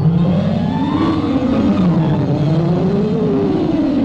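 Film sound effect: a rough, low whooshing tone that swoops up and down in pitch twice, standing for the mountain being heaved up and shaken.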